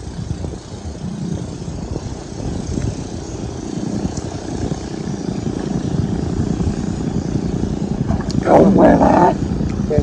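Low, rumbling wind-and-water noise over open river water, growing slowly louder. A man calls out loudly about eight seconds in.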